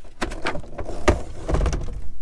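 Clicks and knocks of a motorhome roof skylight being unlatched and pushed open, with rustling handling noise; the loudest knock comes about a second in.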